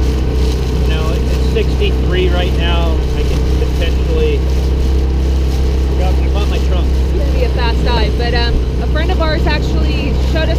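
Outboard motor driving an inflatable dinghy along at speed, a steady low drone, with water rushing along the hull.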